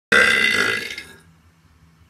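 A man's loud burp, about a second long, starting abruptly and fading away.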